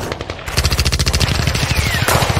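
Rapid automatic gunfire sound effects: a dense run of shots starting about half a second in.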